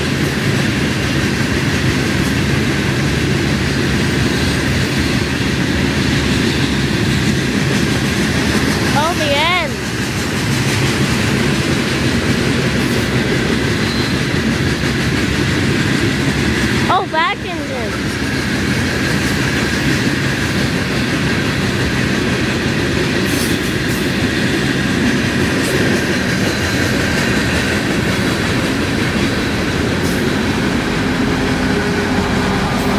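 BNSF freight train of open-topped hopper cars rolling past close by: a steady, loud rumble of wheels on rail with clickety-clack. Two brief wavering squeals come about ten seconds in and again about seventeen seconds in.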